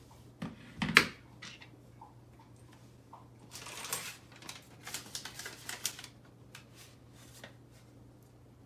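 A sharp knock about a second in, like a cordless drill being set down on a wooden floor, then crackly rustling and crinkling as a printed paper or plastic sheet is picked up and unfolded by hand.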